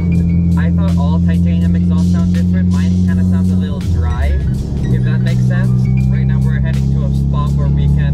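Loud in-cabin drone of a Mitsubishi Lancer Evolution X's turbocharged four-cylinder through a straight-through titanium dual exhaust with no catalytic converter and no mufflers, while driving. About four seconds in the drone drops to a lower pitch and then holds steady.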